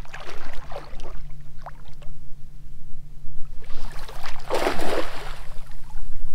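A small cast net thrown over shallow water: light sloshing and rustling, then about four seconds in a brief splash lasting around a second as the weighted net lands and spreads on the surface. A steady low hum runs underneath.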